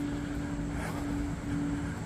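Construction machinery running: a steady mechanical drone with a constant hum, unchanging throughout.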